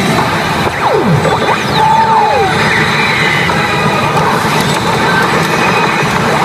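A pachinko machine playing its reach-sequence music and sound effects over a steady, dense din, with falling whistle-like glides about one and two seconds in. These sounds lead up to the prompt to hit the push button repeatedly.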